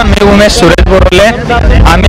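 A man talking steadily into a handheld microphone, with a low rumble underneath.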